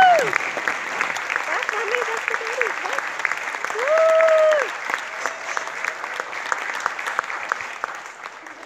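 Audience applauding in a large hall, dense clapping throughout. Two long, loud cheering shouts rise over it, one at the start and one about four seconds in. The clapping thins toward the end.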